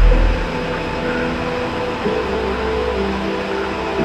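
Dark ambient music: several long held tones over a soft hiss-like haze, with a heavy low bass drone that drops away about half a second in.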